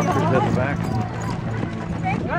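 Footsteps of a crowd of walkers on asphalt, mixed with their overlapping chatter.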